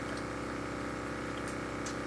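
Steady mechanical hum of a small motor or fan running, with a few faint clicks over it.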